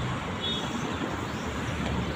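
Steady road traffic noise from passing vehicles.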